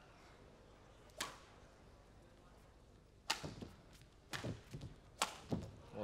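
Badminton rally: four sharp racket strikes on the shuttlecock, the later ones coming about a second apart, with lighter thuds of footwork on the court between them.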